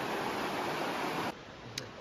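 Shallow, rocky river rushing over riffles, a steady hiss of running water that cuts off suddenly just over a second in, leaving a much quieter background with one faint click.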